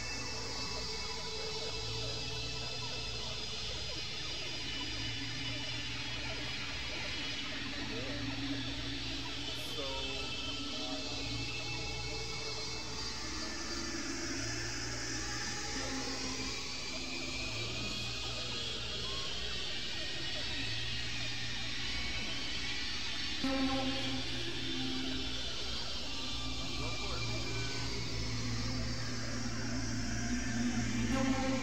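Experimental synthesizer drone music from Novation Supernova II and Korg microKORG XL synthesizers: a steady low drone with held tones above it. Over the top runs a hissy, noisy layer that slowly sweeps down and back up again, like a siren.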